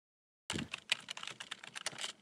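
Computer keyboard typing: a fast run of keystroke clicks, several a second, starting about half a second in.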